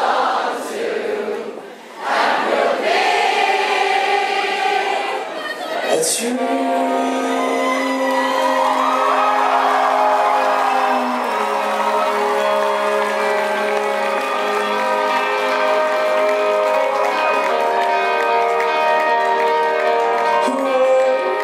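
A concert crowd singing a chorus together with cheering. About six seconds in, sustained chords come in and a lead singer sings over them.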